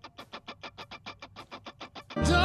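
Quiet, evenly spaced percussive ticking at about eight strokes a second, a chuggy sixteenth-note part of a song being played back.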